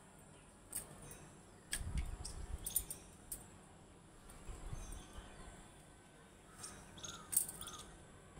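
Bangles clinking lightly now and then as the hands handle grass stalks, with soft rustling: about half a dozen short clinks spread over several seconds, over a faint outdoor background.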